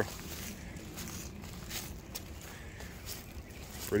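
Footsteps through grazed-down dry grass and leaf litter, a few faint soft crackles over a low steady background rumble.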